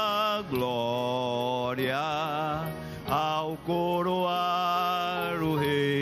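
A man singing a hymn in long, drawn-out held notes with vibrato, over steady sustained instrumental accompaniment.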